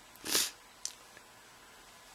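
A single short, sharp intake of breath a quarter of a second in, then a faint click just under a second in, over quiet room tone.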